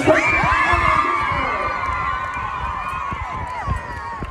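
A group of young cheerleaders screaming and cheering together: several high, held screams burst out at once and trail off over a few seconds.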